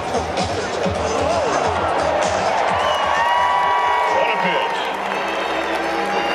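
Ballpark crowd noise: chatter and scattered cheering and applause around a ceremonial first pitch, with music playing over the stadium loudspeakers.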